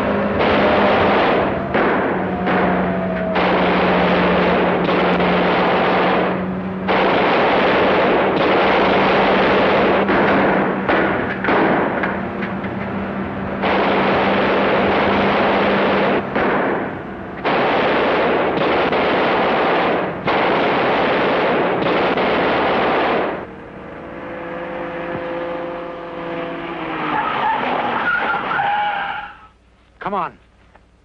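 Film chase sound of a truck and pursuing police cars: engine and tyre noise, cut off and restarted abruptly several times, with a steady low horn-like tone through the first half. Near the end the noise drops away and a group of wavering tones slowly falls in pitch.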